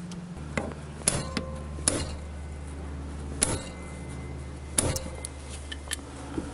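A hammer tapping the end of a screwdriver seated in a seized, corroded carburettor screw to shock it loose. About seven sharp metallic taps at irregular intervals, some ringing briefly.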